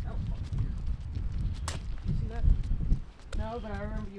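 Footsteps of people walking on a sidewalk over a steady low rumble, with a person's voice briefly near the end.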